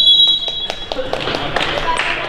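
A long, shrill referee's whistle blast that fades out about a second in. Sharp taps follow, with voices and hall noise echoing in a sports hall.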